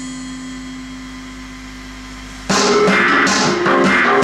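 Live industrial electro-punk music from drum kit and electronics. A break in the song leaves a held low synth tone and a fading ring, then drums and synth come back in loud about two and a half seconds in.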